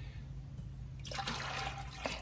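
Water splashing and pouring as a plastic specimen container is plunged and emptied into a five-gallon bucket of water, starting about a second in.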